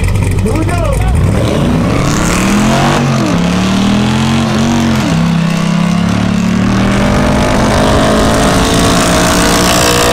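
V8 drag car engine revved in short blips, then launched about a second in and run at full throttle. The pitch climbs, drops sharply twice around three and five seconds in, then climbs slowly and steadily.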